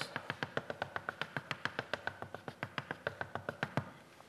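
Chalk tapped rapidly against a blackboard, about nine sharp taps a second, as a scatter of sample points is dotted onto the board. The tapping stops just before the end.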